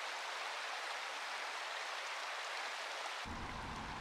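Water running in a shallow gravel-bed stream, a steady hiss. A low rumble joins near the end.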